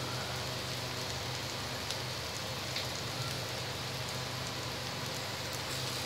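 Radish strips, tomato and green chillies frying in hot oil in a pan: a steady, even sizzle, with a couple of faint ticks.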